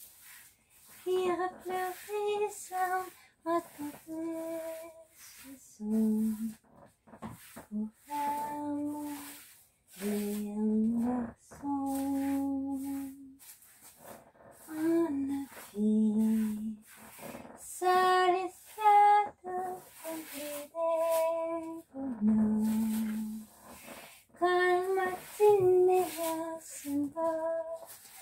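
A woman singing a TV-series theme song unaccompanied, in short held phrases with brief pauses between them.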